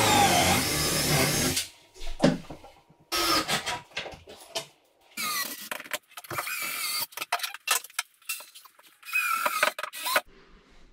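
Cordless drill driving screws to join two cabinets tightly together, in four bursts of a second or two, the motor's pitch falling in the first as the screw pulls tight.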